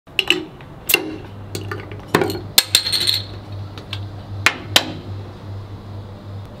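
Metal bottle caps dropping and clattering onto a hard resin-coated tabletop: a series of irregular, sharp metallic clicks with brief ringing, several close together a couple of seconds in, the last about five seconds in.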